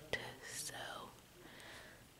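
A woman's soft, breathy whisper close to the microphone, with a small click just after the start.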